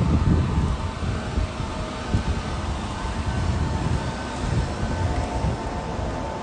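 Wind buffeting a handheld phone's microphone outdoors: an uneven low rumble with a faint steady hum above it.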